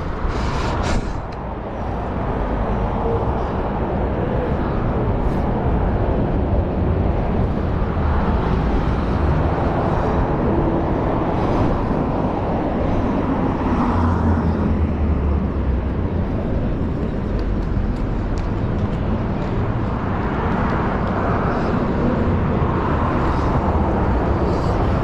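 Highway traffic going by, a steady road noise with a low rumble that swells as vehicles pass one after another.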